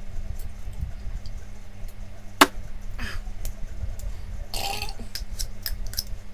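Mouth and spoon sounds of a man eating Vegemite off a soup spoon: a sharp click about two and a half seconds in and a short rasping noise near the end, over a steady low hum.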